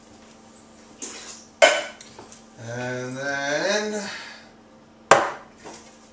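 Kitchen utensils clattering on a worktop, with two sharp knocks, one about a second and a half in and one near the end, as a metal box grater and a block of cheese are fetched. Between the knocks a man hums one wordless note that rises in pitch.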